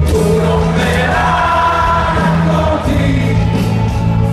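Italian rock band playing live with held sung notes over a steady bass, heard from among the audience in a stadium.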